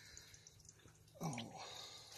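Faint clicks and scrapes of a fillet knife cutting the rib bones out of a bowfin fillet, with a short spoken "oh" a little over a second in.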